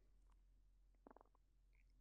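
Near silence between phrases of speech, with only a very faint, brief sound about a second in.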